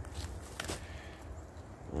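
Quiet footsteps and scuffs on dry leaf litter, a few faint clicks in the first second, over a low steady rumble.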